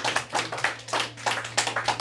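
A small audience clapping: a dense, irregular patter of hand claps.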